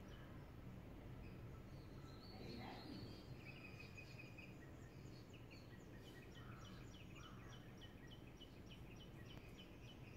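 Near silence: faint background hum with small birds chirping faintly, a quick series of short chirps from about six seconds in.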